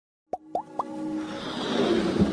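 Intro sound effects for an animated logo: three quick pops, each sliding upward in pitch, in the first second, then a swelling rush of noise that builds toward the end.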